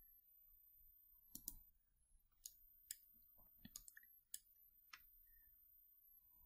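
Faint computer mouse clicks, about eight, coming irregularly from about a second in, against near silence.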